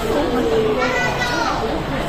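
Indistinct voices and background chatter in a crowded restaurant, with a high-pitched voice rising and falling briefly near the middle.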